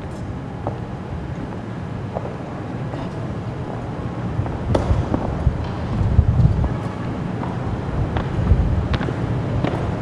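Honor guards' boots striking a stone floor in scattered sharp taps and heavier thuds as they march in a changing of the guard, over a steady low rumble that grows louder about halfway through.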